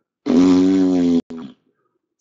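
A man's voice making one flat, buzzing vocal sound for about a second, then cut off sharply, a sound of disgust at pulling yet another of the same player's card.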